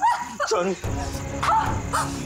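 Short high cries that rise and fall, from a person in a struggle. About a second in, a low, steady music drone comes in under them.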